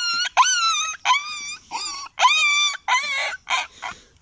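A boy imitating a dog with his voice: a run of about eight short, high-pitched dog-like whines, each bending up and down in pitch.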